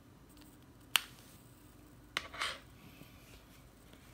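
HDMI cable plug pushed into the HDMI port of an aluminium USB-C hub, giving two sharp clicks, one about a second in and one just past two seconds, the second followed by a short scrape.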